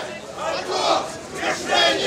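Crowd chanting a slogan in unison, two shouted phrases.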